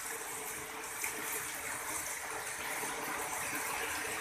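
Steady rain falling, a constant even hiss with no break.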